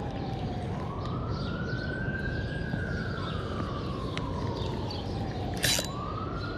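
An emergency vehicle's siren wailing in one slow rise and fall of pitch: it climbs for the first couple of seconds, falls for about three and starts climbing again near the end, over a steady low rumble. A short click comes just before the end.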